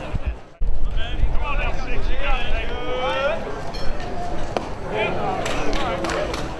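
Voices of people at the ballpark calling out and chattering, with a short dropout in the sound about half a second in and a few short knocks later on.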